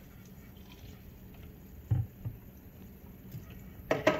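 Plastic water bottles handled at a stainless-steel sink: a dull thud about two seconds in, a lighter tap just after, and a sharper knock near the end.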